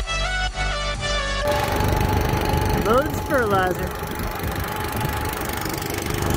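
Background music for the first second and a half, then a sudden cut to a small gasoline engine running steadily, driving the transfer pump that fills the tanks with 32% liquid nitrogen fertilizer. A brief voice comes in about halfway.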